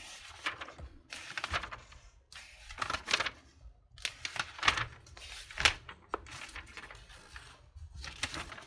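Glossy magazine pages being turned and handled, a run of irregular paper rustles and crinkles as several pages are flipped in quick succession.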